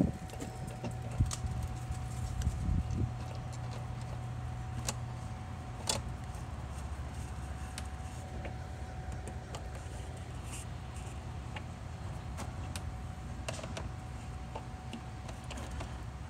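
A steady low mechanical hum runs underneath, with a faint steady tone above it. A few light clicks and taps in the first several seconds come from a hand screwdriver driving small screws into a plastic shade handle on the door.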